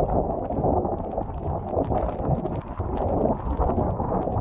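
Strong hurricane wind gusting over the microphone: a loud, uneven rumble of wind noise that rises and falls with the gusts.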